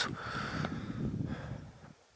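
Wind buffeting the camera microphone: a low, rumbling rush that fades out near the end.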